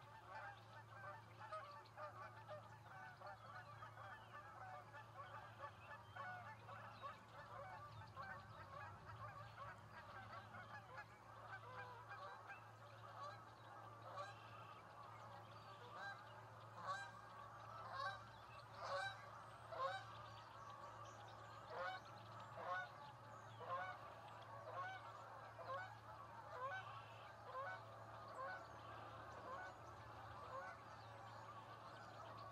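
Faint flock of birds calling, many short overlapping calls, growing louder and denser about halfway through before easing off. A steady low hum runs underneath.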